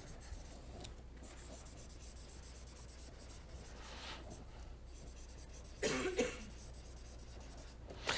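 Faint scratching of someone writing on a board, with a brief cough about six seconds in.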